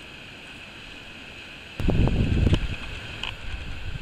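Wind buffeting the microphone: a sudden loud low rumble about two seconds in that eases off but keeps gusting, over a faint steady outdoor hiss.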